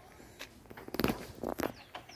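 Footsteps on a dirt forest trail scattered with dry leaves, a few steps about half a second apart.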